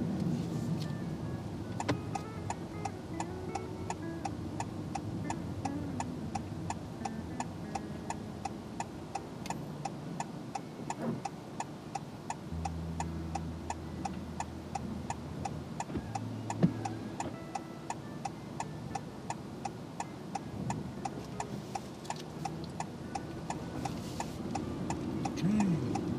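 A car's turn-signal indicator ticking evenly inside the cabin, about two and a half ticks a second, with the right-turn indicator on for the exit.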